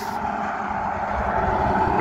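Steady road traffic noise, the sound of a car on a nearby road, growing slightly louder.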